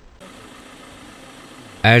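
Faint, steady outdoor background noise with a vehicle engine idling, starting abruptly just after the start; near the end a man's voice begins speaking loudly over it.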